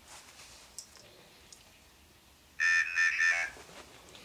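Ovilus III spirit-box device speaking the word "initial" once in a tinny synthesized voice through its small speaker, a little under a second long, about two and a half seconds in.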